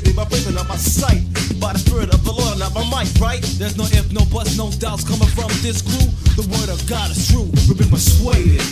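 Old-school Christian hip-hop track: rapping over a busy drum beat with a steady bass line.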